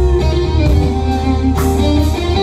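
Live blues band playing an instrumental passage without vocals: electric guitar notes over bass, drums and piano, recorded from the audience.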